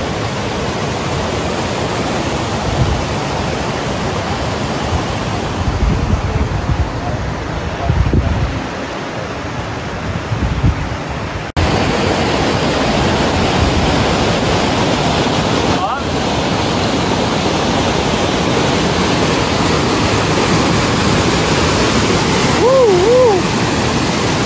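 Steady rushing of a brook waterfall cascading over rock ledges, with wind buffeting the microphone in the first half. The sound cuts abruptly about halfway through, and after it the water is louder and closer.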